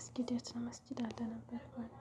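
A woman's voice speaking softly in short syllables.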